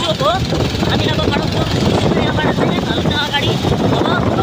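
Wind rushing over the microphone on a moving motorcycle, with engine and road noise underneath and indistinct voices over it.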